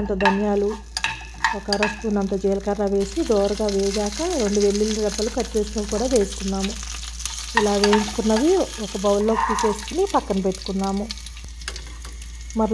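Green chillies, coriander seeds, cumin and garlic sizzling as they fry in oil in a pan while being stirred. A person's voice rises and falls in pitch over the sizzle.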